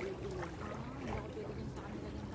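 Soft, low voices talking over a steady low rumble of outdoor background noise.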